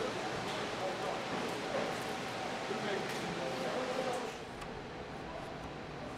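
Indistinct voices of a work crew over workshop background noise with a faint steady hum; the sound drops quieter about four seconds in.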